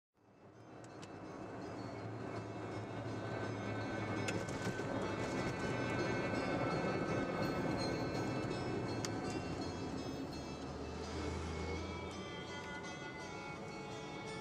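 Wind band music fading in over the first couple of seconds, heard as a dense, full wash of sound; from about eleven seconds in, held notes stand out more clearly.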